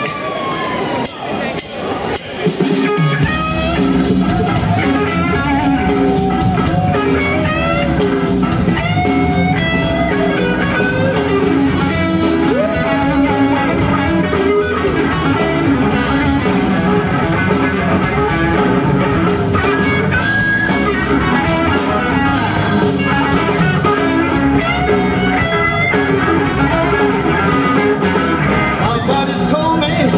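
Live blues-rock band playing an instrumental passage: electric guitar, bass and drums come in together about three seconds in and play loud and steady, under a lead line of bent notes.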